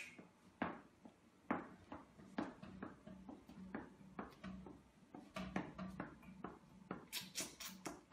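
A dog's tail wagging through the bars of a metal baby gate, tapping against the gate and floor in a steady rhythm of about two knocks a second.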